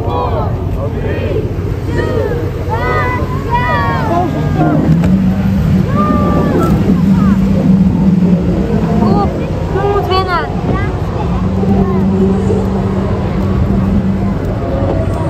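Steady low hum of boat motors on the water, strengthening to a steadier drone about five seconds in and again near the end. Voices talk over it.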